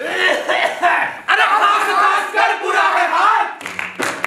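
A group of young voices wailing and crying out together, many pitches overlapping and rising and falling, with a few frame-drum strokes near the end.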